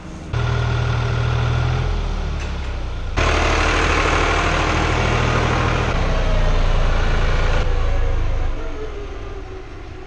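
Tractor diesel engine running close by while pulling a feed mixer wagon, with a loud hissing rush over it for a few seconds in the middle; the engine fades near the end as the tractor drives away.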